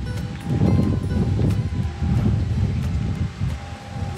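Wind rumbling and buffeting the microphone in uneven gusts, with background music playing faintly underneath.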